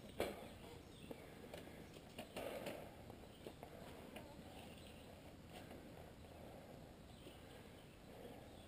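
Quiet woodland ambience with a few faint scattered clicks and a brief soft rustle about two and a half seconds in.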